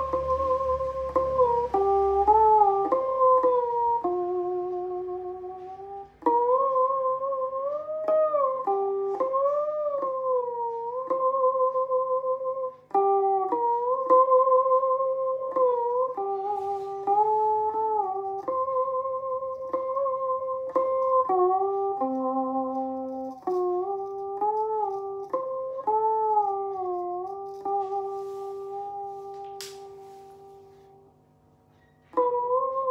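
Đàn bầu (Vietnamese monochord) played through its built-in speaker: a slow melody of plucked harmonic notes that slide and waver in pitch as the rod is bent, with a faint low steady hum underneath. The playing fades out near the end.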